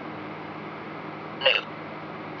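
Necrophonic ghost-box app giving out a steady hiss of white noise, broken about one and a half seconds in by a brief voice-like blip.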